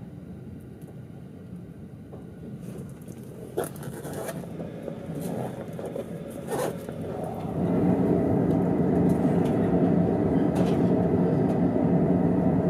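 Running noise inside an E231-series commuter train: a low rumble with a few sharp clacks from the wheels over the track. About seven and a half seconds in it grows suddenly louder into a steady hum of several tones.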